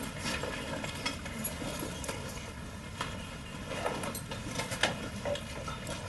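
A room of people writing quietly: scattered small taps and rustles of pens and paper over steady room noise.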